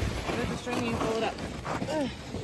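Indistinct voices of people talking in the background over a steady noisy outdoor hubbub.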